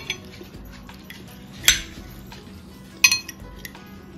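Metal fork and spoon clinking against a ceramic plate while cutting food, two sharp clinks just over a second apart, the second with a short ring.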